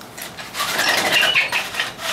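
Rubbing and scraping against a whiteboard with short squeaks, from about half a second in until near the end.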